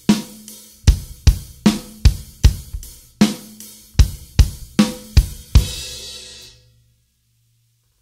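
Acoustic drum kit playing a simple straight rock beat: kick and snare alternating with eighth notes on the hi-hat, a strong hit about every 0.4 s. It stops about five and a half seconds in on a cymbal that rings out for about a second.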